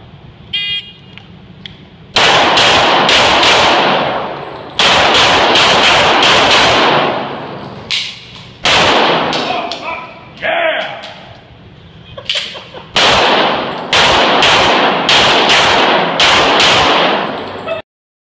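A shot timer beeps about a second in, then an STI 2011 pistol in .40 S&W fires several rapid strings of shots, loud and echoing off the concrete walls of an indoor range, with short pauses between strings.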